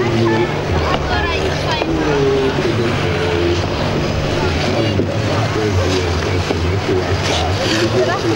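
Many children's high voices chattering and calling out, over a steady low machine drone.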